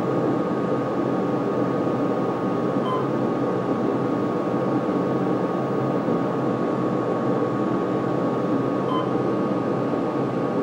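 Otis hydraulic elevator cab descending: a steady rushing hum of the ride with a thin steady whine over it, and two short beeps, about three seconds in and near the end.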